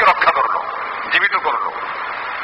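Short fragments of a man's preaching voice, one at the start and another about a second in, over a steady background hiss.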